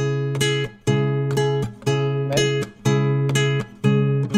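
Nylon-string classical guitar playing a fingerpicked chord pattern, three fingers pulling several strings at once. There is about one plucked chord a second, each ringing briefly before the next.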